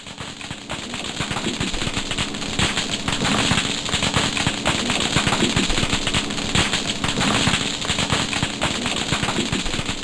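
Chorus of thousands of snapping shrimp: a dense, steady crackle of countless sharp snaps. Each snap is the collapse of a cavitation bubble shot from a shrimp's oversized snapper claw.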